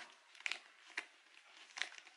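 Metal snap buttons on a handbag's detachable side panel being pulled apart, three short clicks among the rustle of the bag's stiff material being handled.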